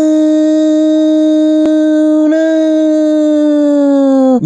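A single long, loud, voice-like held note in an intro jingle: it swoops up into pitch at the start, holds steady for about four seconds, and sags slightly in pitch near the end. A brief click comes about a second and a half in.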